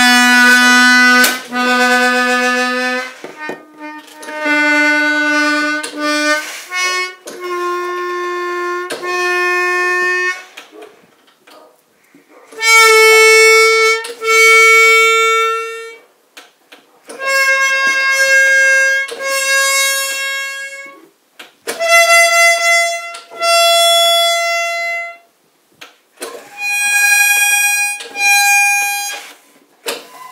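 Reeds of an accordion reed block sounding one at a time on a bellows-fed tuning table. There are seven notes, each sounded twice for one to two seconds, stepping upward in pitch note by note.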